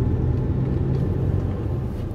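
A car driving, heard from inside the cabin: a steady low rumble of engine and road noise with a constant hum.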